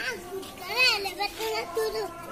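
High-pitched children's voices calling and chattering, with one loud call about a second in.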